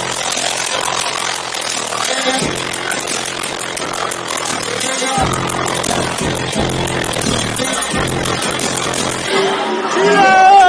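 Loud dance music with heavy bass from a club DJ set, over the din of a packed crowd.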